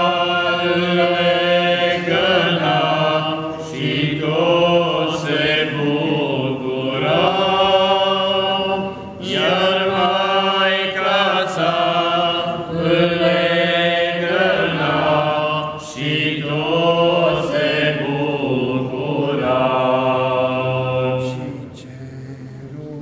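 Small group of men singing a Romanian Christmas carol (colindă) unaccompanied in church-chant style, with a low note held steadily beneath the melody. The singing comes in several phrases with short breaks between them, and it falls away just before the end.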